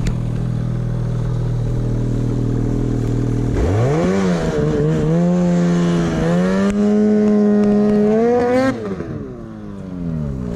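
Ski-Doo Summit snowmobile's 800 E-TEC two-stroke twin with an MBRP exhaust idling steadily, then revved up sharply a little under four seconds in and held high, its pitch wavering and creeping upward for about five seconds. Near the end the revs drop and fall back toward idle as the track churns through snow.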